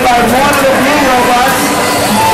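A man's voice over an arena public-address system, echoing, over a steady crowd din.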